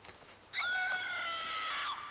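A high-pitched scream, held at an even level for about a second and a half, starting half a second in.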